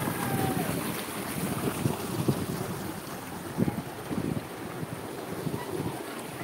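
Shallow stream running over boulders, with irregular gusts of wind buffeting the microphone.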